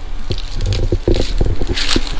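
Rustling and crackling of dry leaves and plant litter, with irregular clicks and low thumps from footsteps and from handling a handheld camera.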